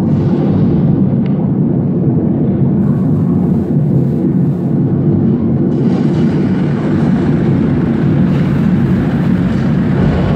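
Loud, steady low rumble from a model volcano display's eruption sound effect, played over loudspeakers; it starts abruptly.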